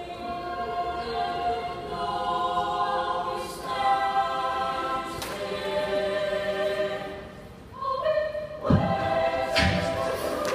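Mixed choir singing a cappella: sustained chords that change every second or two, dipping in level about seven and a half seconds in before swelling again. Two low thumps sound near the end as the singing picks up.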